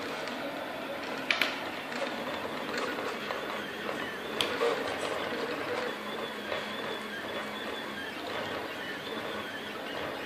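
Picaso 3D Builder FDM 3D printer running a print: a steady whir from the print-head fans and stepper motors, with a thin high whine for a few seconds from about halfway through. Two sharp clicks come about a second in and again near the middle.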